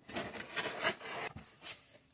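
Packing tape on a cardboard shipping box being slit with a blade and the flaps pulled open: a run of noisy scraping with several sharp strokes.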